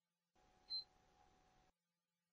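A single short, high electronic beep from a PlayStation 3 console as it is switched on, otherwise near silence.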